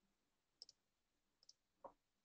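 Near silence with three faint computer-mouse clicks, the first about half a second in and the last near the end.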